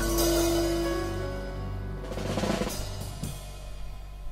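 Tenor saxophone holding a long note over an electronic jazz backing with a deep bass tone and drums; about two seconds in a cymbal and drum passage comes in as the tune winds down.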